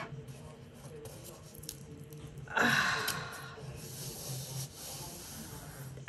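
A woman's short, breathy "uh" about halfway through, over faint handling sounds and a few light clicks as a cardboard gift box is opened.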